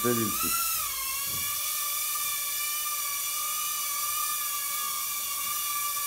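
Mini drone's propellers whining steadily as it flies, the pitch rising briefly about half a second in and then settling back to a steady high whine.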